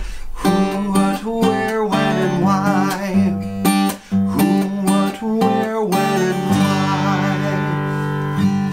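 A man singing while strumming an acoustic guitar, his held notes wavering; the song ends on a long, ringing strummed chord in the last second or so.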